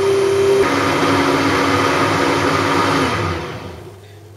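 Hand-held immersion blender running in a plastic jug of whipped evaporated milk and coffee mixture: a steady motor whine that drops to a lower pitch under a second in, then winds down and stops near the end.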